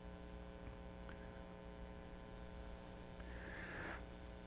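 Steady low electrical mains hum from the sound system in a quiet pause, with a faint hiss rising near the end.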